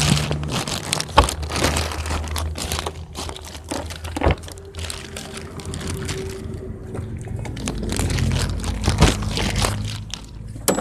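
Clear plastic bag crinkling and rustling in irregular bursts, over a low steady hum.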